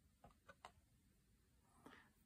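Near silence, with a few faint soft clicks as a cardboard board-book page is turned.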